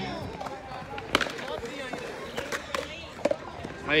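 Faint background talk from several people, with a few short sharp knocks.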